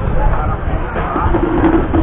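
Indistinct chatter of people talking around the eating tables, several voices overlapping, over a steady low rumble.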